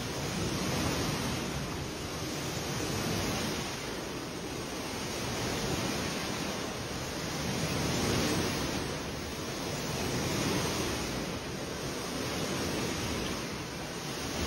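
Swimming-pool water sloshing and splashing in waves, swelling and fading about every two to three seconds, as earthquake shaking rocks the water back and forth.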